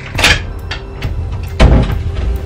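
Wooden interior door being pulled shut: a short scrape just after the start, then a heavy low thump as it closes about one and a half seconds in.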